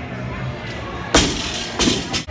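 A loaded barbell with rubber bumper plates is dropped from overhead and hits the gym floor with one loud, sharp impact about a second in. A second, lighter impact follows just under a second later as the bar bounces.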